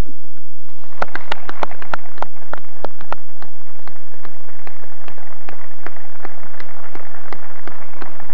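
Audience applauding at the end of a speech. The clapping starts about a second in and holds steady.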